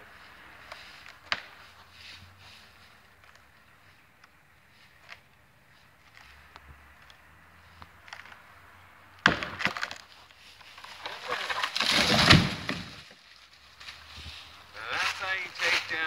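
A rotten dead tree giving way: a sharp crack of breaking wood about nine seconds in, then a rush of snapping and splintering that ends in the loudest moment as the trunk hits the ground a few seconds later.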